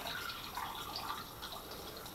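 Wild-yeast culture liquid poured from a glass jar, trickling faintly through a funnel into a two-litre plastic bottle.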